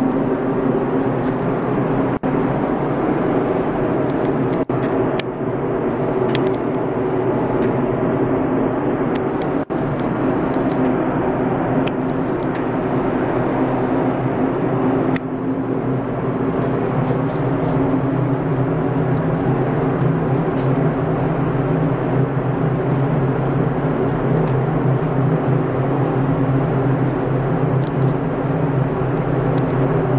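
Steady mechanical drone of a spray booth's ventilation fan running, with a constant low hum and airflow noise, a few light clicks in the first half, and the low hum growing stronger about halfway through.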